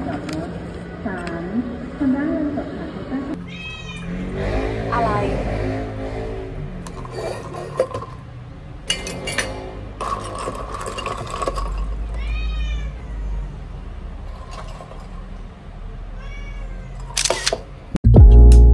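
A house cat meowing several times, short arching calls.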